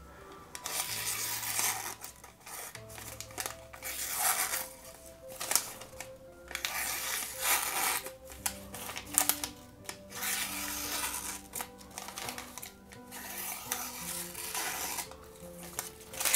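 A freshly sharpened Fallkniven P folding knife with a VG-10 steel blade slicing thin receipt paper in a series of short, hissing strokes, testing its edge. Soft background music with a simple melody plays under the cuts.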